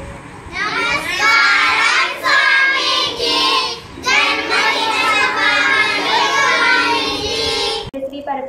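A group of children chanting together in unison, in two long phrases with a brief break near the middle.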